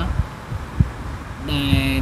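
Low, irregular thumps and rumble with one sharp tap just under a second in, during a pause in talk; a man's voice speaking starts again near the end.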